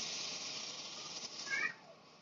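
Steady hiss of a pot of vegetables sizzling on the heat, fading as coconut milk is poured in. It cuts off suddenly just after a short high squeak near the end.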